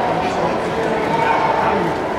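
Crowd chatter: many voices talking at once, with no one voice standing out, in a busy shopping mall.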